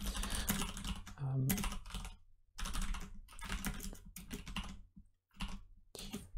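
Typing on a computer keyboard: quick runs of keystrokes with two short pauses.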